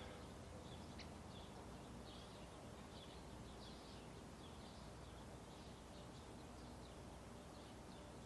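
Near silence: faint outdoor background with soft, high-pitched chirping repeating throughout and one light click about a second in.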